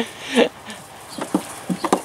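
Goats at a feed tub giving one call and then several short, low calls in quick succession.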